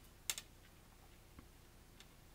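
Quiet room tone with a short sharp click about a third of a second in, a smaller click right after it, and a faint tick later: a steel tape measure being handled and laid across a sheet of thin nonwoven agrofibre.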